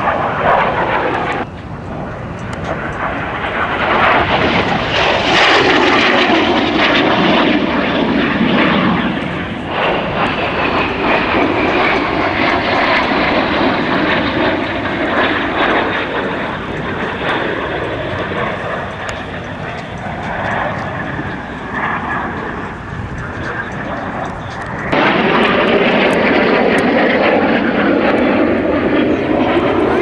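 L-39 Albatros jet trainers flying overhead in close formation, their turbofan engines giving a loud, steady jet noise with a whine that slides in pitch as they pass. The sound changes abruptly about a second and a half in and again near the end.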